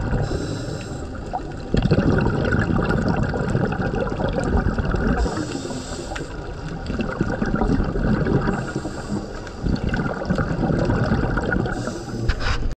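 Underwater recording of scuba diving: a steady low rumbling water noise with gurgling exhaust bubbles from a diver's regulator, the bubbling coming back every few seconds.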